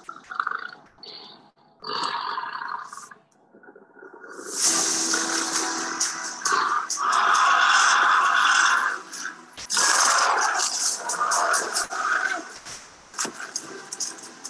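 Soundtrack of an animated dinosaur film: music mixed with dinosaur roar and growl sound effects. It is sparse and quiet for the first few seconds and turns loud and dense from about four and a half seconds in.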